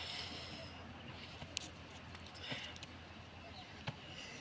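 Faint heavy breathing and rustling of two people grappling on concrete under a lock, with a breathy exhale at the start and another about two and a half seconds in, and two short clicks.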